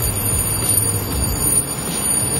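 Steady city street noise, a low rumble and hiss, with a thin high-pitched whine held over it.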